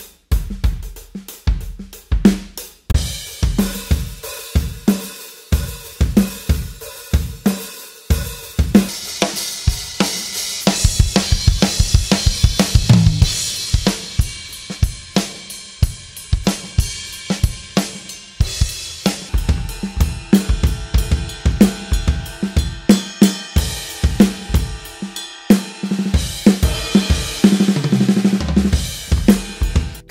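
Soloed rock drum tracks playing a steady beat of kick, snare, hi-hat and cymbals, from two kits in turn: one an acoustic drum set, the other an electronic drum kit's sounds.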